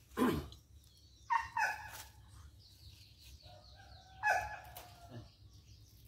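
A dog barking a few times in short separate calls, with small birds chirping faintly in between.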